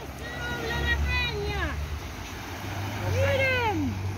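Two drawn-out voice exclamations, each with a pitch that rises and falls, over a steady low rumble.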